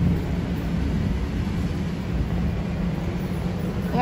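Steady low rumbling background noise of an outdoor urban setting, with no distinct events.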